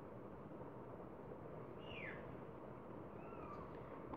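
Faint steady room hiss with a faint, short falling animal call in the background about halfway through, and two fainter short falling calls near the end.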